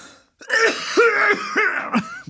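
A man's harsh, acted coughing and throat-clearing fit, rough and raspy with strained voiced hacks, starting about half a second in.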